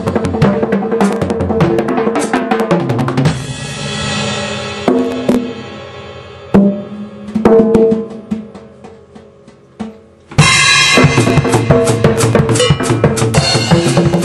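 Solo on a large acoustic drum kit: fast fills of many strokes on toms, snare and bass drum, then a cymbal wash about three seconds in that rings out and fades. A few spaced single drum hits follow, dying down to a near-pause, before the full kit comes back in suddenly, loud and dense, about ten seconds in.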